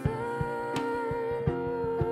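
Live worship song: a woman sings one long held note over grand piano, while drums played with soft mallets keep a steady beat of about three hits a second.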